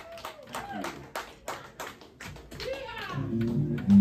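Scattered audience clapping and cheering, with a shout of "yeehaw" about two and a half seconds in. Near the end an electric guitar starts playing.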